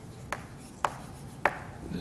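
Chalk on a chalkboard: three short, sharp taps about half a second apart as the chalk strikes the board while writing.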